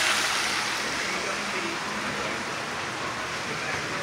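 Cod fillets frying in hot oil in an electric deep fryer: a steady sizzle that grows a little fainter as it goes on.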